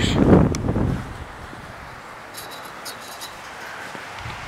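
Wind buffeting the camera's microphone for about the first second, then quiet outdoor air with a few faint high ticks near the middle.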